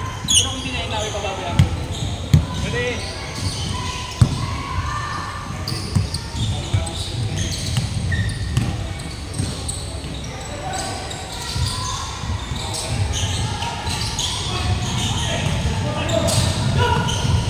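Basketball bouncing on a hardwood gym floor during play, with several sharp bounces in the first six seconds, under indistinct shouts of players, all echoing in a large sports hall.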